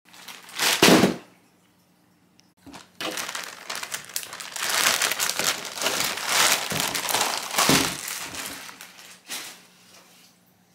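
Clear plastic bag crinkling and rustling as it is handled and opened around a pair of Crocs clogs. There is one loud short rustle about a second in, then continuous crinkling for several seconds. A faint steady hum sits underneath.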